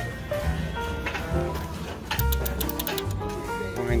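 Wind-up outhouse novelty music box playing its tune in short pitched notes, with clicks and knocks from the box being handled.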